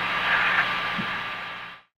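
Steady hiss of the Apollo 8 onboard tape recording of the command module cabin, with a steady hum and a thin whine running under it, fading out near the end.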